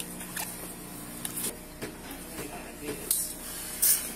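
A few short, hissing rustles over a steady low hum, the two loudest about three seconds in and near the end.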